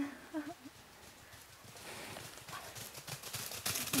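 A dog running over dry fallen leaves, a quick rustling patter of paws that grows louder over the last couple of seconds as it comes closer.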